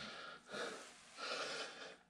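A man's breathing: two soft breaths, a short one about half a second in and a longer one a second or so later.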